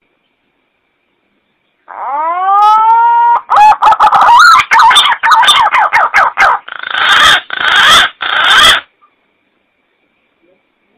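Green pigeon (punai) song played as a hunting lure call. It is one phrase beginning about two seconds in: a rising whistle, then a fast run of wavering whistled notes, ending in three harsh grating notes.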